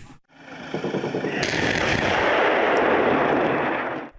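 A salvo of rockets launching from truck-mounted BM-21 Grad-type multiple rocket launchers: a dense, continuous roar with crackling that swells over the first second and a half.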